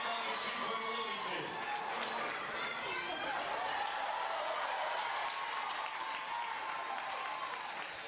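Arena announcer talking over the loudspeakers, his words hard to make out, with a crowd clapping and cheering underneath.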